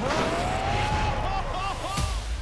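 A loud whooshing rush of noise with a tone that rises near the start and holds, then wavers in short arcs near the end.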